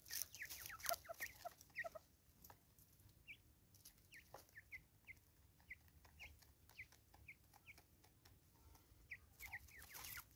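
Natal spurfowl feeding: short, falling call notes repeated every half second or so. Sharp pecking taps come thickest in the first couple of seconds and again near the end. The whole is quiet.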